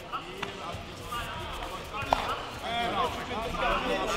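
Voices calling and shouting in a large, echoing sports hall during a kickboxing bout, with scattered thumps and one sharp smack about two seconds in.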